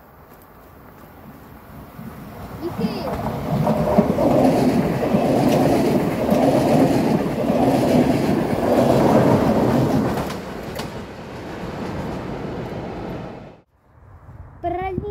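A locomotive-hauled passenger train (a regional express of red ÖBB coaches and locomotive) running past on the near track. The rumble and clickety-clack of its wheels grow as it approaches, swell about once a second as the coaches' wheels pass, then ease off and cut out suddenly near the end.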